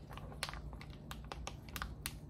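Plastic package of fish cakes being handled, giving a string of sharp, irregular clicks and crinkles.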